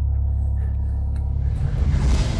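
Low, steady bass drone of tense background music, with a noisy swell building near the end.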